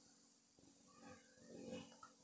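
Near silence: room tone, with a faint, brief wavering pitched sound a little past halfway through.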